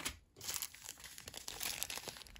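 Small plastic zip-top bags of glass seed beads crinkling as they are handled, set down and picked up. The crinkling is rapid and continuous, with a brief pause just after the start.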